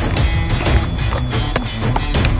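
Background music with a strong bass line.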